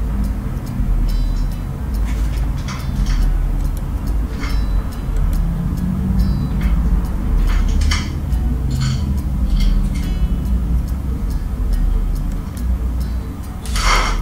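Short clicks, taps and scrapes as screws and a metal handle are fitted to a rigid vinyl cabinet door, with a louder scrape near the end, over a steady low background.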